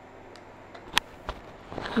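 Quiet shop background noise with a few light clicks, one sharper click about halfway through, from plastic-bagged merchandise being handled.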